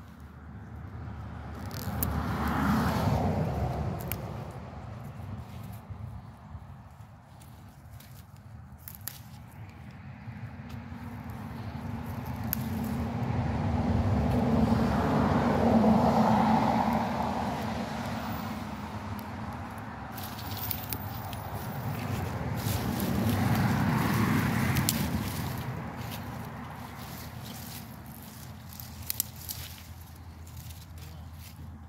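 Road traffic: three vehicles pass one after another, each swelling up and fading away over several seconds, about three seconds in, around fifteen seconds and around twenty-four seconds. Light crackling and rustling of plant leaves being handled in the pauses between them.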